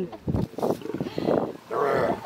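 Lions growling during mating: a series of short, rough growls.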